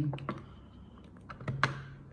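Small plastic clicks and knocks as a programming-cable connector is pushed into its port on an NIU scooter motherboard, with the sharpest click about one and a half seconds in.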